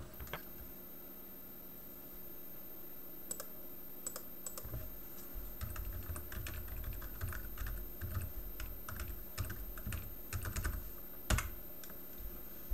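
Typing on a computer keyboard: a quick run of key clicks starting a few seconds in, ending with one louder keystroke near the end.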